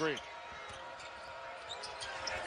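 Steady arena crowd noise of a live college basketball game heard through the TV broadcast, with a few faint short sounds from play on the court.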